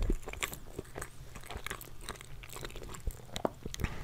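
Close-miked chewing of a mouthful of homemade banana cake, with many small mouth clicks throughout.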